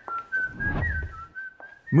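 Someone whistling a slow tune: one clear, thin tone that steps between a few notes, sliding briefly from one to the next.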